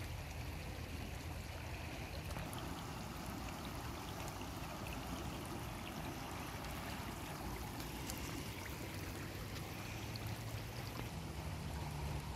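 Shallow stream running over stones, a steady gentle rush of water.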